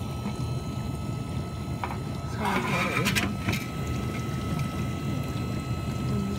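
GE dishwasher running through its wash: a steady low hum of the motor and pump with water moving inside and a thin steady whine above it. The owner says the machine is shaking as it runs.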